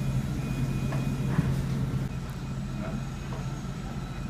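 A steady low mechanical hum that eases slightly about halfway through.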